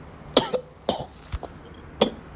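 A man coughing twice, short coughs about a third of a second in and again about a second in, followed by a brief click.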